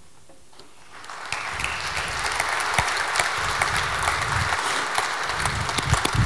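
Audience applause, beginning about a second in and building to steady clapping.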